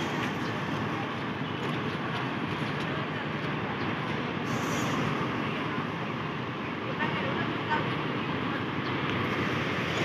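Steady background noise of a bus terminal, with parked coaches idling.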